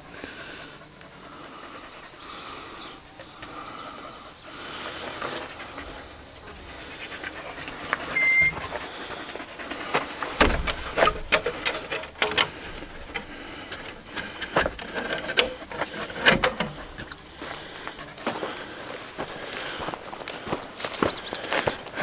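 Footsteps crunching and rustling through dry grass and debris: quiet at first, then a run of irregular crackles and thumps from about ten seconds in. A brief high chirp comes about eight seconds in.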